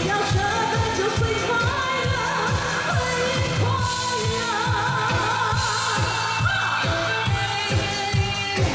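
A woman singing a Chinese-language pop song live into a microphone, holding long notes with a wavering vibrato over a backing band with a steady kick-drum beat of about two beats a second.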